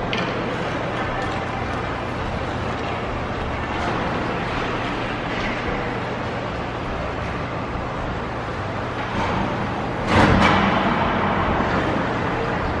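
Ice hockey rink ambience during warm-up: skates on the ice over a steady low hum, with one loud bang about ten seconds in.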